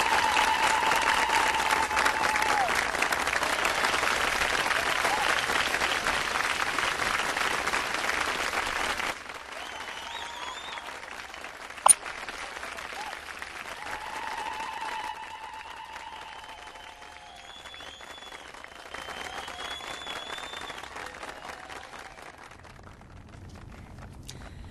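Wedding guests clapping and cheering, with a long wavering high-pitched ululation over the start of the applause. About nine seconds in it cuts to quieter crowd noise with a single sharp click, and more drawn-out trilling calls follow.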